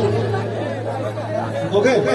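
Voices talking and chattering over a stage PA, with a steady low hum underneath; no song is playing.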